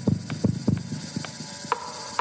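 Stripped-down live techno: a quick run of low, decaying drum hits in the first second over a dry clicking percussion pulse about twice a second, with a steady pitched tone entering near the end.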